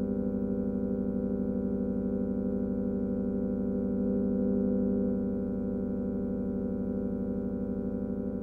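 Electronic music: a steady drone of sustained synthesizer tones with a rapid pulsing flutter, swelling slightly about halfway through.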